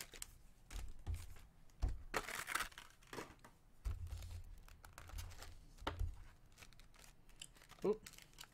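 Foil booster-pack wrappers crinkling and tearing as they are handled and opened, with scattered light clicks and knocks on the table; the crinkling is loudest about two seconds in.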